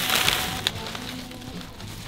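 A plastic shopping bag rustling and crinkling as it is carried, loudest at the start and thinning out, with one sharp click under a second in. Background music plays underneath.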